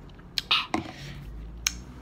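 Two sharp clicks about a second apart, with one short spoken word between them.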